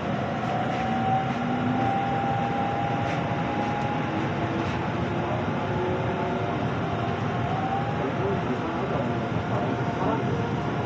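Inside an electric commuter train pulling away from a station: a steady rumble of wheels on rails, with a motor whine that rises slowly in pitch as the train gathers speed.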